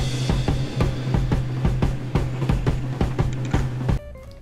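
Music with a busy drum-kit beat of kick, snare and cymbals over a steady held bass note; it cuts off suddenly at the end.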